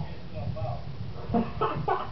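A man laughing in short, choppy bursts in the second half, after a brief murmur of voice.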